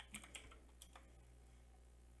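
Computer keyboard keys tapped about five times in the first second, typing in a short name, then only a faint steady low hum.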